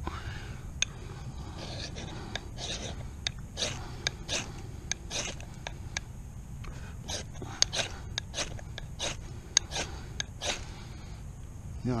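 A ferrocerium rod scraped again and again with a knife: a string of short, sharp scrapes, about one or two a second, as sparks are thrown at a wax-soaked cotton round that does not catch.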